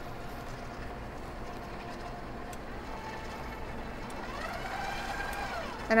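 Steady electric motor hum of a stand mixer driving a pasta roller attachment, with a higher whine that swells about four seconds in and fades just before the end.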